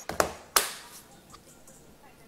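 Two sharp taps about a third of a second apart, the second ringing out for about half a second.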